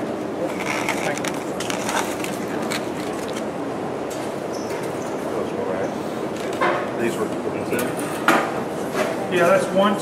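Steady murmur of many people talking in the background, with a few light clicks and knocks scattered through it.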